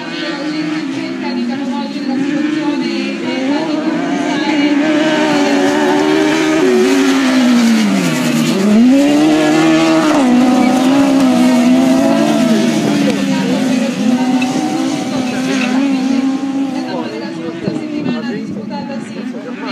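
Several off-road race-car engines revving on a dirt track, their pitch rising and falling as they accelerate and lift off for corners. The sound grows louder through the middle as the cars come closer, then eases. About eight seconds in, one engine drops low in pitch and climbs again as it pulls away.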